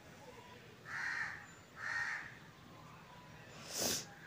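A bird calling outside twice, two short rough calls about a second apart. Near the end comes a brief clatter as a steel lid is set onto the pan.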